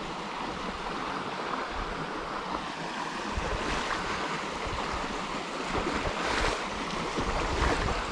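Shallow creek water running steadily over rocks and fallen branches in a riffle, with a few low gusts of wind buffeting the microphone.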